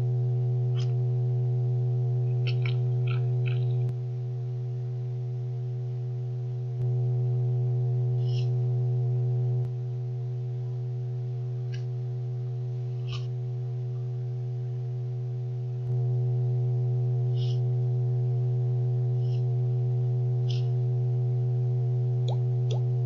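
Steady low electric hum of a chocolate fountain's motor running. It drops in level twice for a few seconds, with brief faint high chirps now and then.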